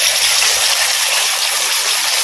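A masala-coated fish slice sizzling in hot oil in an iron kadai: a loud, steady hiss of frying.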